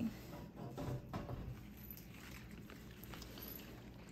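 Faint handling noise from a hand-held camera being picked up and moved: a few soft knocks and rustles in the first second or so, then low room tone.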